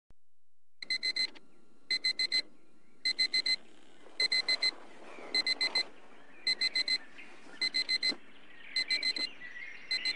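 Digital alarm clock beeping: quick groups of four high beeps, one group about every second, over a faint steady hiss. Other sounds begin to join in near the end.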